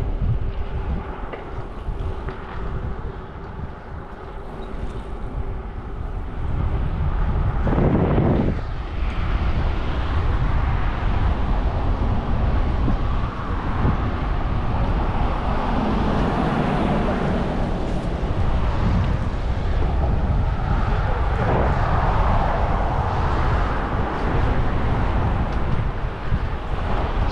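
Wind rumbling on a GoPro microphone while riding a bicycle, with road traffic going by. The noise dips for a few seconds, then swells about eight seconds in and stays louder.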